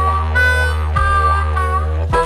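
Live didgeridoo-and-harmonica music: a harmonica plays a stepping melody over a steady deep didgeridoo drone, with a low beat about once every second and a bit.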